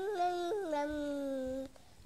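A toddler's long, drawn-out vocal sound, one sustained wavering vowel with a step in pitch about half a second in, stopping shortly before the end.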